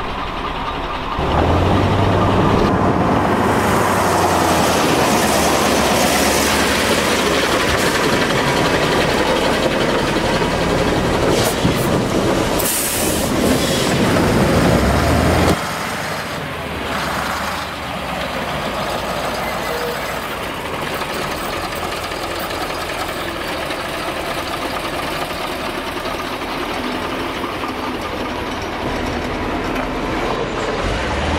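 Diesel engine of a MAN 10t gl eight-wheel military truck running under load as the truck crawls over a wave track, with a brief hiss about halfway. The sound drops suddenly to a quieter steady engine run about halfway through.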